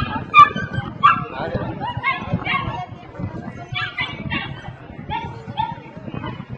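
A dog barking in a series of short, sharp barks, roughly two a second with a pause in the middle, the loudest about half a second in, over people talking nearby.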